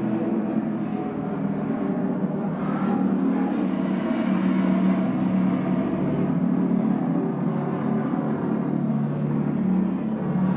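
A steady, low, engine-like drone that carries on unbroken without pauses or strikes.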